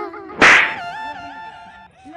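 A whip-crack comedy sound effect about half a second in, followed by a warbling electronic tone that wavers up and down in pitch for about a second, then cuts off.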